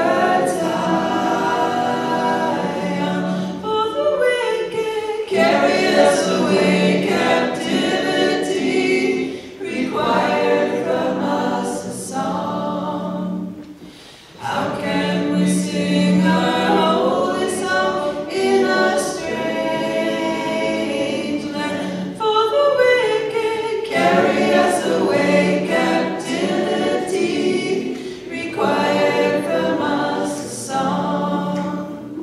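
Several voices singing together unaccompanied, in long sung phrases, with a brief pause about fourteen seconds in.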